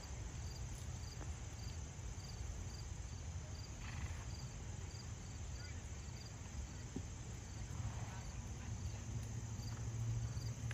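An insect chirping steadily outdoors, a short high chirp repeating about twice a second, over a low rumble.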